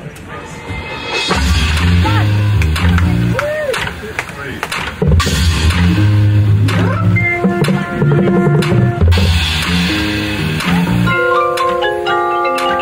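Marching band playing: loud low brass chords and drums come in about a second in, and mallet percussion joins near the end.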